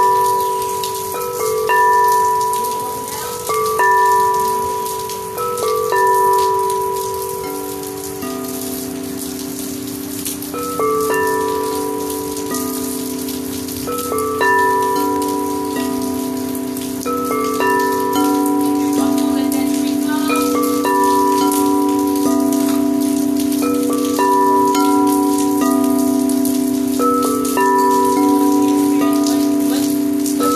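Quartz crystal singing bowls struck with a mallet about every two seconds, each note ringing and fading. From about seven seconds in, several bowls ring together in a sustained, overlapping chord with a deeper bowl joining in. Steady rain hiss underneath.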